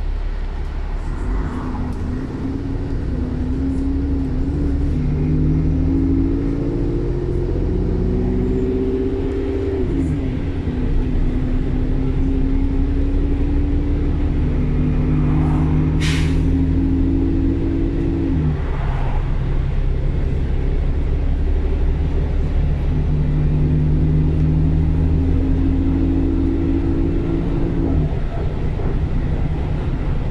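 Diesel bus engine and driveline heard from inside the passenger saloon, pulling up through the gears: the pitch climbs, drops at a gear change about a third of the way in, climbs more slowly and drops again past the halfway mark, then holds steady before easing off near the end. A single sharp click sounds a little past halfway.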